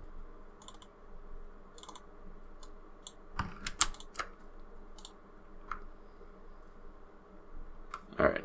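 Scattered clicks of a computer mouse and keyboard, about ten of them at irregular intervals, over a faint steady hum.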